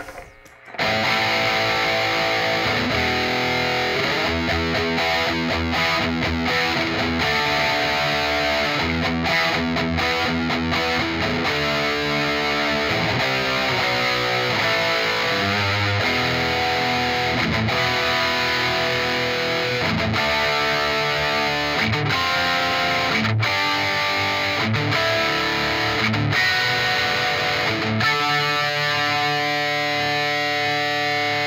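Electric guitar played through a heavily distorted amp on its bridge humbucker, which is direct-mounted to a bell brass pickup mounting bar: riffs and chords starting about a second in, ending on a held, ringing chord near the end.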